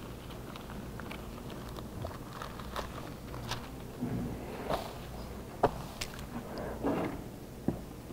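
Bible pages being leafed through at a lectern: soft paper rustles and a few sharp clicks, the sharpest in the second half, over a steady low hum.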